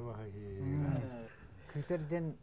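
A man's low voice, speaking in long drawn-out sounds for about a second, then a brief sound near the end.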